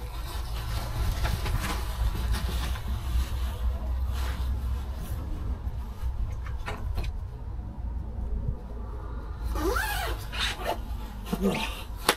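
Rustling and handling of a waterproof jacket being put on, with scattered short clicks and a steady low wind rumble on the microphone; a brief rising tone sounds about ten seconds in.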